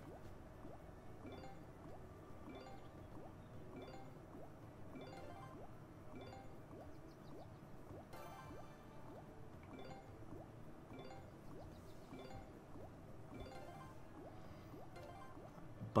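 Big Bass Amazon Xtreme slot game's background music, faint, with short chime-like reel sound effects repeating about every second and a bit as the reels spin and stop on autoplay.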